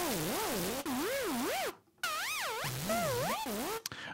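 ZynAddSubFX synthesizer patch playing two held notes, a noisy pitched tone whose pitch swings smoothly up and down about three times a second from a sine LFO on the voice frequency, with a short gap between the notes. It is an early stage of a synthesized scratched-vinyl sound, the pitch sweeping up and down to imitate a record being pushed back and forth.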